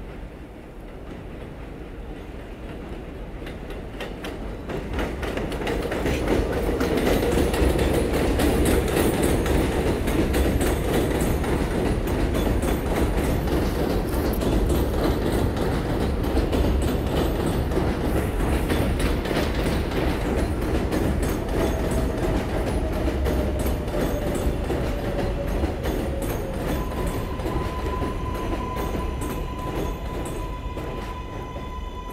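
NYC Subway 7 train of R188 cars arriving at an elevated station: the rumble and wheel clatter build from about four seconds in and stay loud as the cars roll past. From about three quarters of the way through, a faint falling whine is heard as the train slows, then a steady whine near the end.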